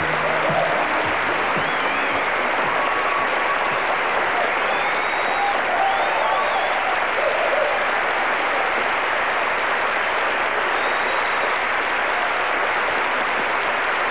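A studio audience applauding steadily at the end of a song, with a few cheers rising over the clapping. The band's last notes die away at the very start.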